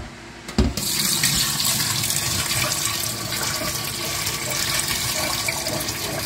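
Used citric acid cleaning solution poured in a steady stream from a stainless steel water distiller boiler pot, splashing into a stainless steel sink. It starts just after a single knock a little over half a second in.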